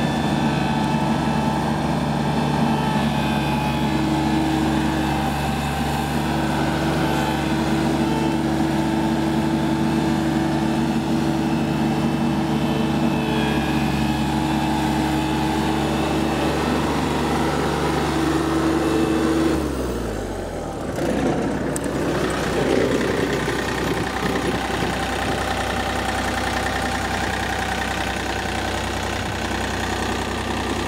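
The John Deere 3245C mower's Yanmar 3TNV84-T three-cylinder turbo diesel runs steadily at working speed. About two-thirds of the way through, its pitch drops as the engine slows, and it settles into a steady idle.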